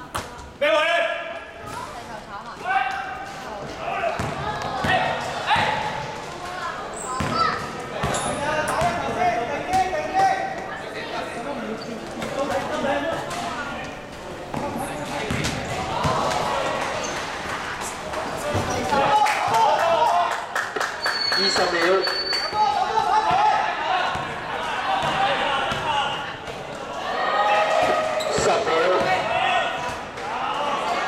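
A basketball bouncing on an indoor court during a game, with players' voices calling out throughout, in a large, reverberant sports hall.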